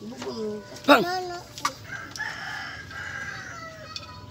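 A rooster crowing: a short loud pitched call about a second in, then one long held crow that falls in pitch at its end.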